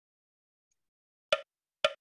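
Electronic metronome set to 75 beats a minute, pacing kapalbhati breaths: silence, then two short, sharp wood-block-like clicks near the end.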